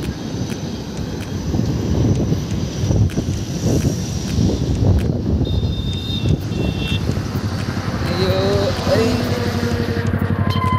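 Wind buffeting the microphone while riding along a highway, with traffic noise and a brief high-pitched tone around the middle. Near the end a voice and a motorcycle engine idling close by.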